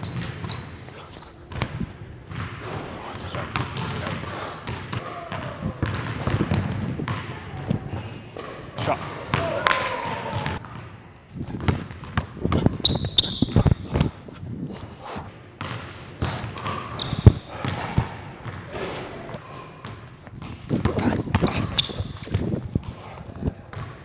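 Basketball dribbled on a hardwood gym floor: irregular sharp bounces, with short high sneaker squeaks on the wood as players cut and defend. The loudest single knock comes a little past two-thirds of the way through.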